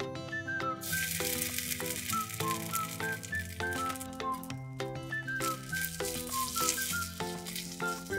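Sizzling in a miniature wok as ketchup fries in hot oil with diced shallot and green onion. It starts about a second in and breaks off briefly midway. It plays under background music, a melody of short notes.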